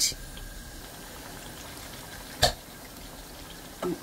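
Thick tomato stew simmering in a steel pot with a soft, steady bubbling. A single sharp knock sounds about two and a half seconds in.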